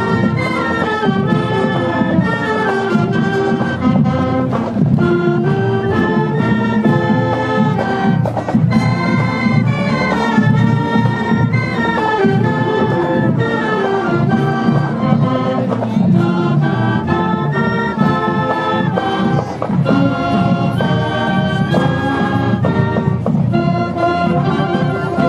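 High school marching band playing a tune as it marches, with flutes and saxophones among the wind instruments carrying the melody over a full, dense low end.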